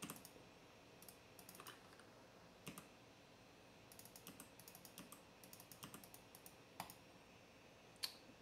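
Faint computer keyboard typing: scattered light key taps and clicks, with a denser run of them in the second half.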